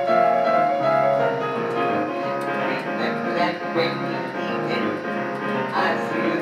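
Electronic keyboard playing in a piano voice: held chords with a melody moving over them.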